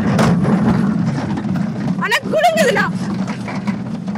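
Small roller coaster cars running along their track with a steady low rumble. About two seconds in, a rider gives a short high-pitched squeal that rises and falls.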